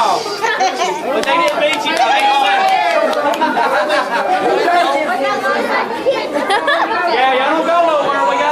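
Group chatter: several boys and men talking over one another, with no single clear speaker.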